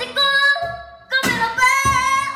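A young woman singing two held phrases with a wavering pitch, live, over a steel-string acoustic guitar that is strummed at the start of each phrase.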